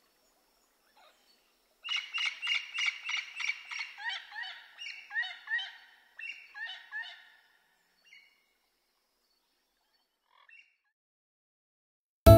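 Jungle bird calls: a rapid run of short repeated chirping notes, about four or five a second, starting about two seconds in and slowing and fading over some five seconds, followed by a couple of faint single chirps.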